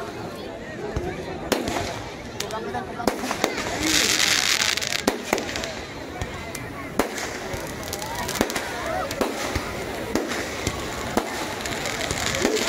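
Fireworks going off: an irregular string of sharp bangs and cracks, with a loud hissing burst about four seconds in.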